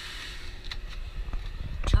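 The paddle-latch door of a trailer's service room being opened and stepped through: a few light clicks, then a couple of heavy low thumps near the end, over a steady low rumble.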